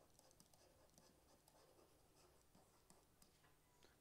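Near silence, with faint taps and scratches of a stylus writing on a tablet screen.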